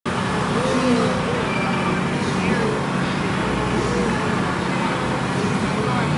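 Cars idling and creeping forward in a slow line, with a steady low engine hum, and people talking in the background.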